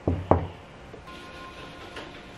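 Two quick knocks on a hotel room door, about a quarter of a second apart.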